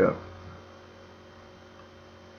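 Steady low electrical hum, like mains hum picked up in the recording, after a spoken 'yeah' at the very start.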